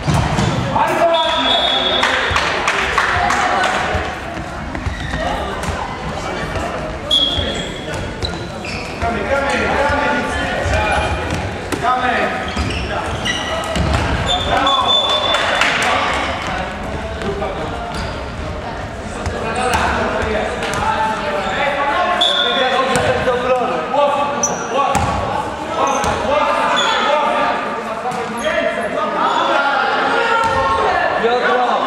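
A handball bouncing on a sports-hall court floor amid players' shouts and calls, all echoing in the large hall.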